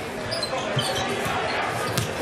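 A basketball being dribbled on a hardwood court, a few short thumps, over the steady noise of an arena crowd.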